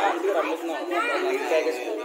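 Several people talking at once, overlapping voices in a busy chatter.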